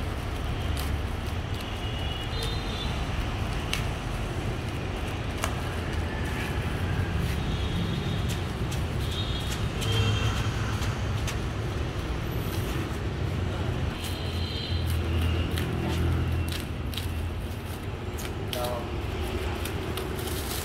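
Clear plastic stretch wrap crinkling and tearing in many short crackles as it is pulled off a new walking tractor, over a steady low rumble.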